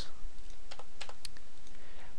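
A few light keystrokes on a computer keyboard as code is edited, clustered around the middle of the moment, over a steady background hiss.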